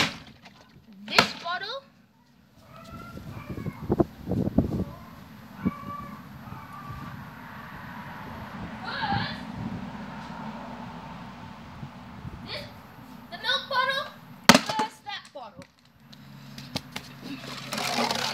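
A plastic milk bottle with some water in it knocking and thudding on concrete as it is flipped and handled: a few knocks near the start and around four seconds in, and one loud sharp thud near the end. Bits of a boy's voice come in between.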